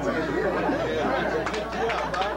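Several people talking over one another and laughing, over a steady low hum. Sharp hand claps begin near the end.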